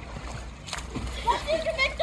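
Pool water splashing as children swim, with a child's high-pitched voice calling out from about a second in.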